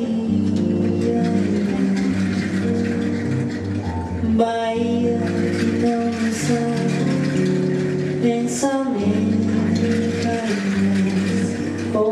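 Small live band playing the instrumental opening of a Brazilian song: strummed acoustic guitar chords, a new chord struck about every four seconds, over a bass guitar line and hand percussion.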